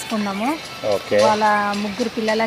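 Only speech: a woman talking, her voice rising and falling, then holding one long, level drawn-out vowel in the second half.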